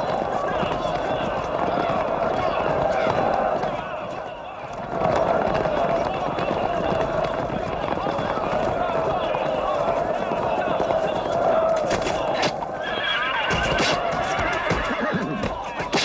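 Horses neighing and galloping hooves amid men shouting in a mounted charge, a dense, continuous battle din with a brief lull about four seconds in.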